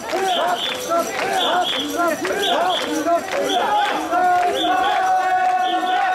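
Crowd of mikoshi bearers chanting in rhythm as they carry the portable shrine, many voices rising and falling together, with a pair of short high-pitched pips about once a second. From about four seconds in, one voice holds a long steady note over the chant.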